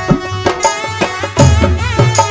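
Live band playing an instrumental passage of a Rajasthani bhajan: electronic keyboard melody over a heavy, steady drum beat.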